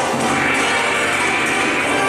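Ride soundtrack music with many sustained notes layered together, playing steadily.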